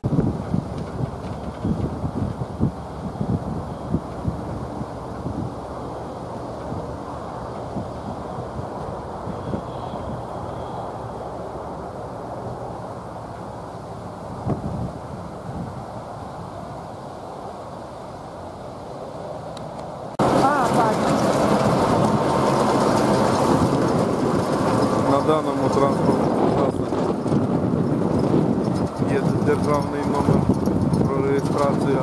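Outdoor noise of construction machinery with indistinct voices; about twenty seconds in the sound jumps abruptly louder, a machine engine running close by.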